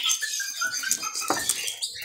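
Small cage birds giving short, high squeaky chirps, with light scuffling and a single tap from birds moving about the cage about a second in.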